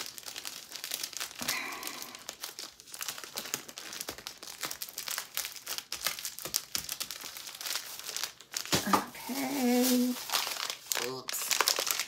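Plastic packaging crinkling and rustling in an irregular run of crackles as shopping is rummaged through and a plastic candy bag is handled.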